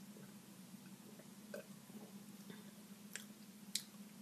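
Faint mouth sounds of a person sipping and swallowing a sparkling fruit drink, then smacking her lips as she tastes it: a few soft clicks, sharper ones near the end, over a low steady hum.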